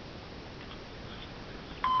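Low steady hiss. Near the end a loud, high electronic tone starts suddenly and slides down in pitch: the opening of a song played through a phone's speaker.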